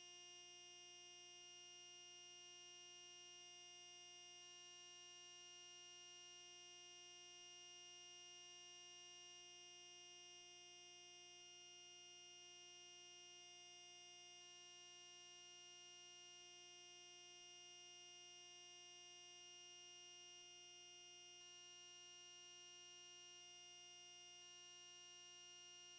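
Near silence, with a faint, steady electronic hum made up of many fixed tones that does not change.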